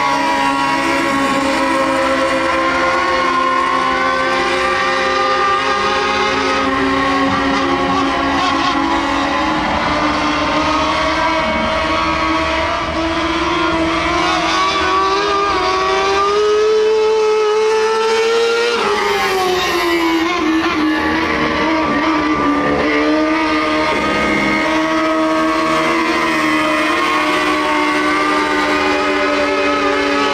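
Mini Late Model dirt-track race car engine running hard through laps. Its pitch climbs gradually as the car comes down the straight, then drops sharply as it passes close by, about two-thirds of the way in, before settling to a steady drone as it goes around.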